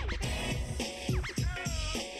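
Sitcom theme song with a steady beat and quick record-scratch sweeps.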